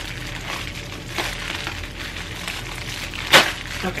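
A plastic bubble mailer being torn open by hand: the plastic crinkles as it is pulled, and a short sharp rip about three and a half seconds in is the loudest sound.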